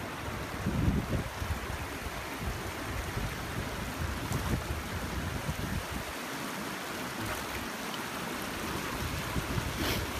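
Shallow stony river running, with wind rumbling on the microphone through the first six seconds or so.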